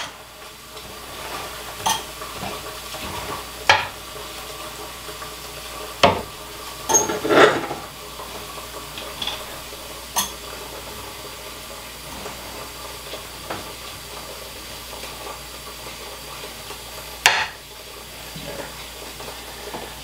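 A small hand garden rake scraping and stirring through loose mulch substrate in a glass snake enclosure, breaking it up. A handful of sharper scrapes and knocks, a few seconds apart, stand out over a steady low hiss.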